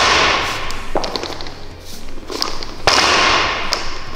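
A barbell loaded with bumper plates lands on the gym floor twice, about three seconds apart, during repeated power cleans. Each landing is a sudden clatter lasting under a second, and a lighter knock comes about a second in.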